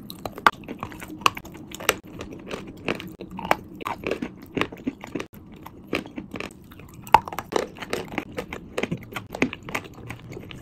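Close-miked biting and chewing of lumps of chalk by two people: a steady run of irregular sharp crunches and crackles as the chalk breaks up in their mouths.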